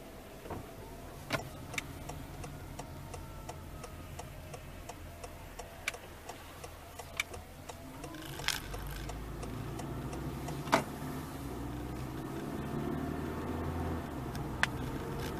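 Inside a Honda Freed Hybrid's cabin, an even ticking runs at about three ticks a second. From about eight seconds in, the car's running hum grows louder with a rising whine as it speeds up, broken by a few sharp knocks.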